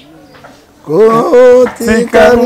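A man's voice singing drawn-out, held notes that glide between pitches, starting about a second in after a brief quiet moment.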